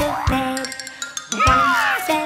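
Bouncy instrumental children's music with cartoon boing effects for jack-o'-lanterns hopping: a few springy thumps with gliding pitch, then a long falling glide in the second half.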